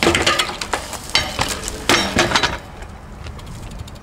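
BMX bike clattering on a stone ledge: a sharp hit at the start, then more clanking impacts about a second and two seconds in, as tyres and metal parts strike the stone.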